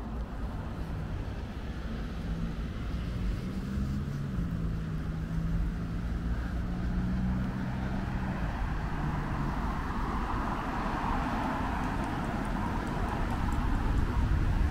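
Road traffic: a vehicle engine hums steadily for the first half, stepping up in pitch a couple of times, then the rushing tyre noise of passing cars swells louder towards the end.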